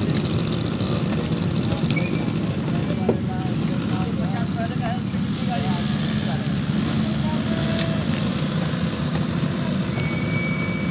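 Steady low rumble of vehicle engines running, with faint voices in the background.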